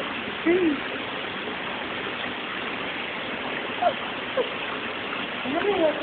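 A steady rushing noise, like running water, with a few brief voice sounds over it.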